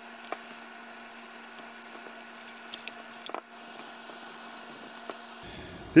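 Faint steady electrical hum over quiet room noise, with a few soft ticks of handling.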